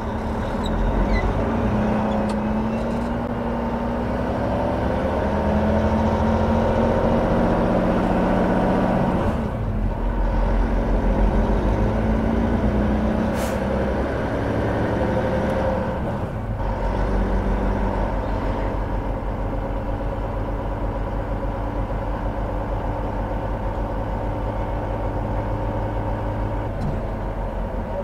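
Heavy-duty Volvo 780 diesel truck running under way, heard from inside the cab, its engine pitch rising and falling. The engine sound dips briefly twice, about ten and sixteen seconds in, and there is one short sharp click about halfway through.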